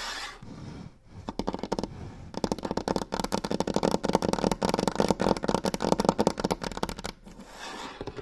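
Long fingernails rapidly tapping and scratching on a wooden tabletop, a fast, dense clatter of nail clicks. It is sparse for the first couple of seconds, gets loudest through the middle and thins out near the end.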